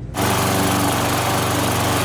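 Walk-behind petrol lawn mower engine running steadily. It cuts in suddenly just after the start.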